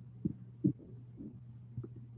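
A steady low hum with three soft, low thuds, the loudest about two-thirds of a second in.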